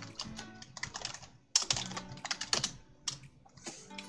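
Typing on a computer keyboard: a run of quick keystroke clicks, pausing briefly about one and a half seconds in, then a louder cluster of keystrokes.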